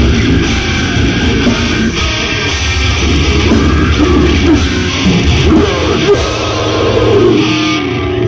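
A live death metal band playing at full volume: heavily distorted electric guitars, bass and drums. The song cuts off suddenly at the very end.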